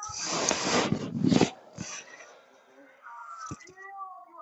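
Loud rustling and scraping handling noise right on the phone's microphone for about a second and a half, as the headphones or phone are adjusted. Faint background voices follow.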